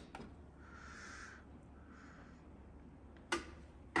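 Vestel-built front-loading washing machine just after its start button is pressed: mostly quiet with faint hissing twice, then a single sharp click about three seconds in.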